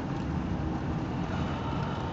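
Steady low rumble of engine and road noise heard inside a moving motorhome's cab.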